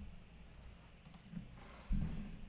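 A few faint ticks, then a single sharp click with a dull knock near the end: a computer mouse click selecting a search result.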